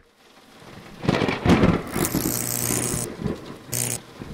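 Thunder-like intro sound effect: a rumble swells over the first second into a loud crash, followed by a high hissing crackle and a short final burst just before the end.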